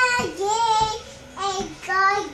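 A little girl singing a children's song in a high child's voice, with held, wavering notes and a short break about a second in.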